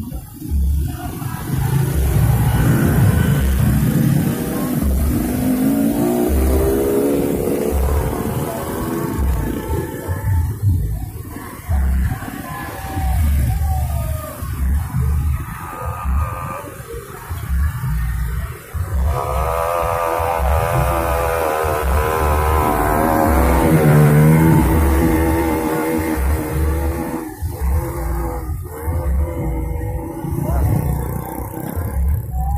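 Motorcycle and car engines of a slow convoy passing close by, running with a rev that rises in pitch about five seconds in; music plays along with the engine noise, clearest in the second half.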